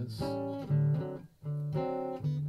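Acoustic guitar strumming chords, with a short break in the playing about one and a half seconds in.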